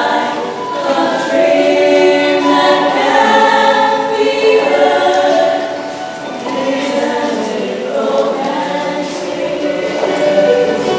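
Mixed-voice high school show choir singing held chords in harmony, easing off briefly a little past the middle before swelling again.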